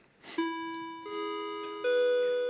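Three-note rising public-address chime: three electronic tones struck one after another, each higher than the last and left ringing so they overlap. It is the attention signal that heralds an announcement.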